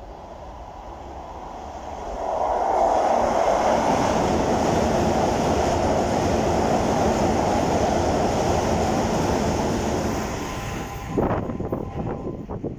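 Keisei 3100-series electric train passing through the station at speed without stopping. The rush and rumble builds over the first two seconds, stays loud and steady for about eight seconds as the cars go by, then fades. A brief loud burst comes near the end.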